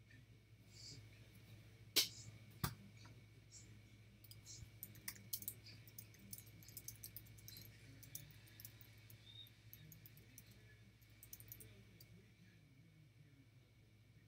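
Two sharp knocks on a desk, then a run of light, quick clicks from typing on a computer keyboard and clicking a mouse.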